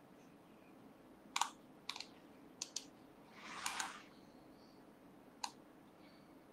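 Faint scattered tapping of a computer keyboard: about six sharp separate clicks, with a short rustling swish in the middle, over a low room hum.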